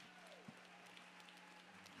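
Near silence: faint room tone with a steady low hum and a single soft click about halfway through.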